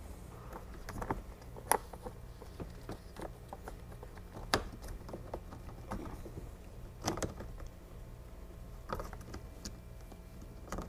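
Plastic clicks, taps and rustling as hands work a C5 Corvette sun visor and its wiring into the headliner mount: a scatter of sharp clicks, about seven, over a low steady hum.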